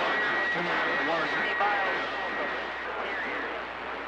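A man's voice coming over a two-way radio receiver, weak and garbled in heavy static, the speech barely readable. A steady high whistle sits over it for the first half.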